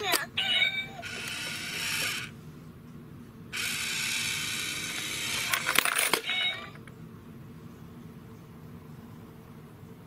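A battery-driven novelty coin bank set off by a coin placed on its plate: its small motor whirs in two spells, the lid opens to take the coin, and a quick run of clicks comes as the mechanism snaps shut. After that it is quiet.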